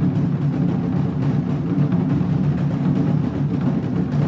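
Percussion music with steady low drum tones.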